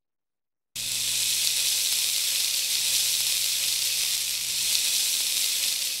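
Rain sound effect: a steady hiss of a downpour that starts suddenly about a second in and begins to fade near the end.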